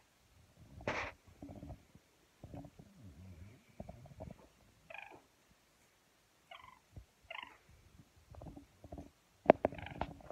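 A few short, soft peeps from a four-week-old yellow golden pheasant chick being held and stroked, between stretches of low rumbling and rustling close to the microphone, with a sharp click about a second in and another near the end.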